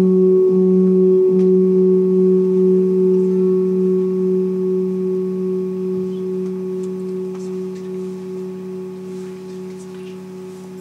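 Sustained electronic drone of two steady low tones, one an octave above the other, with fainter higher overtones, slowly fading out. A few faint clicks come near the end.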